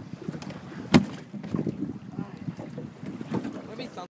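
Wind buffeting the microphone with an uneven low rumble, and one sharp knock about a second in, with a few fainter knocks after it.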